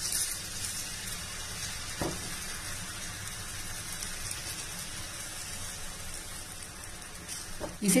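Oats chilla batter sizzling softly and steadily in a little oil on a hot non-stick tawa as more batter is ladled on, with a light knock about two seconds in.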